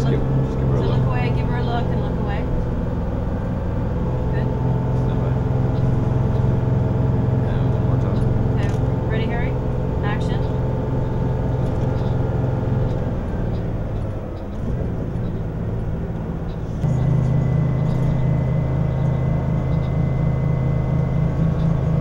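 City bus engine droning steadily, heard from inside the passenger cabin. About two-thirds of the way through it drops and quietens, then picks up again, with a thin high whine joining it.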